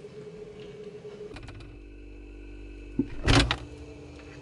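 A steady low hum, then a click and a short, loud thump with rustling about three seconds in: the camera being handled and set down by an open refrigerator.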